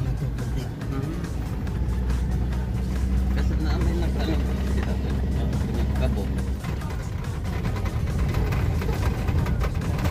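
Engine and road rumble inside the cabin of a four-wheel-drive vehicle driving on a rough sandy desert track, with rattles from the bumpy surface. The low rumble changes about two-thirds of the way through. Music plays over it.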